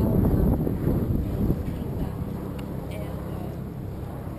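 Wind buffeting an open microphone, a low rumble that is heaviest for the first second and a half and then eases to a steadier, quieter rumble.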